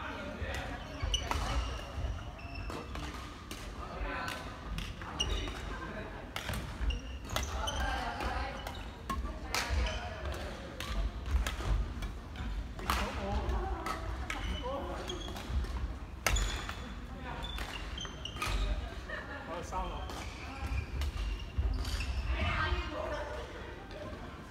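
Badminton play in a large sports hall: sharp, irregular racket strikes on the shuttlecock and players' footsteps on the wooden court floor, among people's voices.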